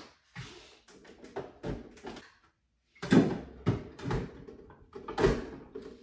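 A series of knocks and clacks from a portafilter and cup being handled at a Breville espresso machine while a double shot is set up. The loudest strikes come about three seconds in and again just after five seconds.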